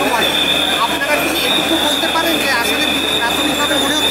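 A man speaking among a crowd of voices close to the microphone, over a steady high-pitched whine.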